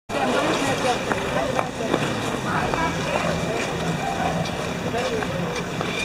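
Ice rink din: skate blades scraping and gliding on the ice, with scattered ticks and the indistinct voices of other skaters.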